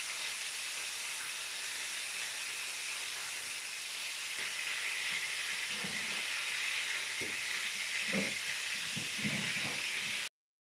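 Fish frying in hot oil in a frying pan: a steady sizzle, with a few faint soft knocks in the second half as the pieces are handled.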